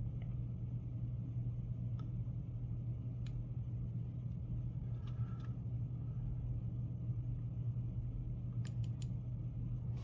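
Steady low electrical hum with a few faint, light clicks from wooden craft sticks being handled against a plastic eye and resin cup.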